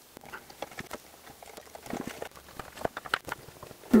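Light, irregular clicks and scuffs of hands working a rubber seal onto the edge of a Vespa scooter's metal side cowl.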